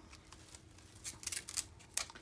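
Paper rustling and crackling in short bursts about a second in as a roll of wallpaper border is handled in the hands, with a sharp click near the end.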